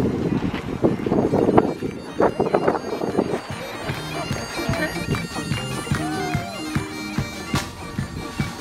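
Bagpipes playing a tune over their steady drone, with voices and laughter in the first few seconds.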